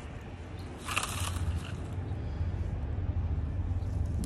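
A short rustle and crackle of dry dead stems being pulled out of a planter by a gloved hand, about a second in, over a steady low rumble.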